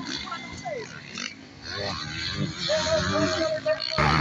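Motocross bike engines revving and changing pitch on the track, mixed with nearby people's voices.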